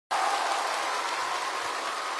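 A large arena audience applauding, a steady, dense wash of clapping.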